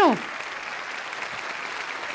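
Studio audience applauding, a steady even clapping just after a voice glides down and stops at the very start.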